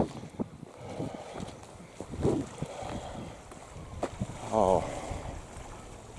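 Light wind on the microphone with scattered small clicks, and a short wavering voice sound about three-quarters of the way through.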